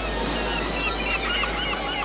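A crowd of seabirds calling over one another in short, arched cries, with a steady wash of surf beneath.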